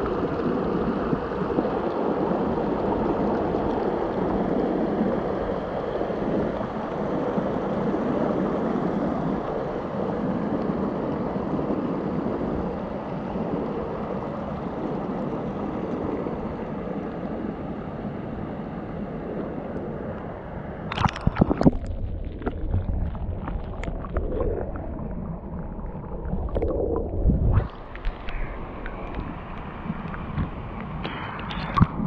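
Shallow River Monnow water running over stones close to the microphone, a steady wash. About two-thirds of the way through it breaks into splashes and knocks as the camera dips in and out of the water, and the sound turns muffled and gurgling, with a loud low splash near the end.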